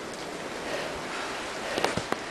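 Steady hiss of wind and rain in the open, with a couple of sharp clicks near the end.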